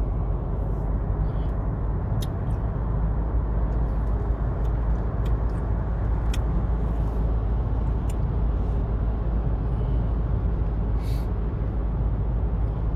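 Steady low rumble of a car's engine and tyres heard inside the cabin while cruising on a motorway. A few faint clicks and a short hiss sound near the end.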